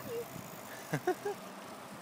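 Steady rushing hiss of riding on a paved trail, wind and tyre noise, with a few faint, short voice sounds about a second in.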